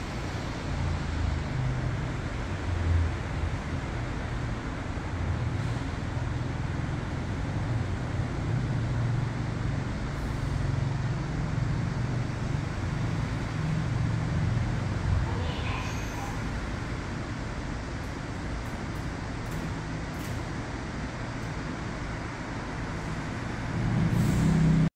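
Steady low rumbling background noise, growing louder in the last half second as the elevator car arrives at the landing.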